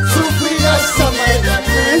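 Live band playing Andean carnival music in an instrumental stretch between sung lines: electric bass repeating short notes over a quick, even beat, with a sliding melody line above.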